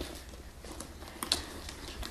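Faint handling of a leather shoulder bag: a few soft clicks and rustles as it is lifted by its strap and brought down into the hands, over a low room hum.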